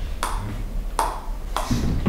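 Table tennis ball bouncing on a table tennis bat: three sharp, evenly spaced taps in two seconds, each with a short ring.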